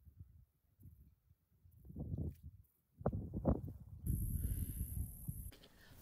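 Wind gusting on the microphone, mostly a low, uneven rumble, faint at first and louder from about two seconds in, with a brief steady hiss near the end.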